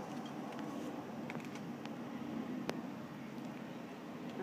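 Light clicks and handling noise from a FrSky Taranis RC radio transmitter being handled and set down, with one sharper click a little past halfway, over a steady background hiss.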